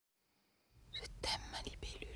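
A person whispering over a low, steady rumble, both coming in about a second in after silence.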